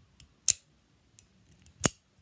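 Razortech Mini Keychain Firecracker out-the-front automatic knife: the spring-driven blade snaps back into the aluminium handle and then fires out again, two sharp clicks about 1.3 seconds apart with a few faint ticks between.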